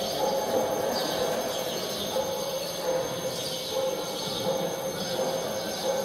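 Layered sound-mix soundscape: a steady drone with a held low-middle tone under a hiss and a thin high whine, close to the rumble and squeal of a train.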